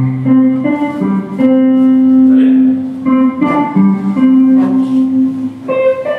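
Electric guitar, a red Les Paul-style solid-body, playing a single-note melodic line, one note at a time, with a few notes held for about a second.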